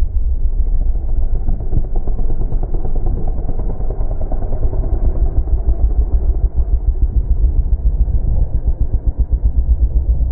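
Pit bike's 140 cc single-cylinder engine running under way, heard muffled from a helmet-mounted camera, with a heavy, uneven low rumble throughout.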